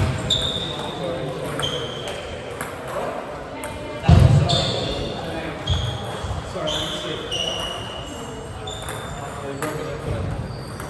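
Celluloid-type table tennis balls ticking off bats and tables, a run of short high clicks at irregular intervals from the rally on court and the tables around it, in a reverberant sports hall. A heavy thump comes about four seconds in, over a murmur of background chatter.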